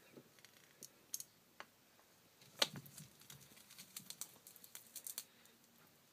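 Faint, scattered small clicks and ticks, with one louder knock a little before halfway and a quick irregular run of tiny clicks in the second half.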